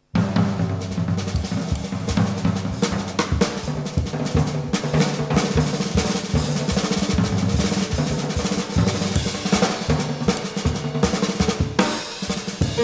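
Jazz trio of double bass, piano and drum kit coming in abruptly at full level and playing on, with the drum kit loudest over sustained low bass and piano notes.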